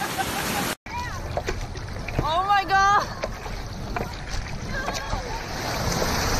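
Surf rushing and wind buffeting the microphone, with a person's high, drawn-out yell about two seconds in. The rush of water and wind grows louder toward the end.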